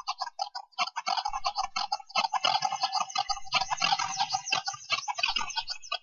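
A dense, crackling texture of rapid clicks and chirps from the soundtrack of a projected video artwork, continuous and with no speech.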